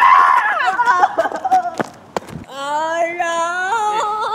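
A teenage boy's shout trails off, followed by a few short knocks from a mock fight. From about two and a half seconds in comes a long, drawn-out cry from the boy lying on the ground.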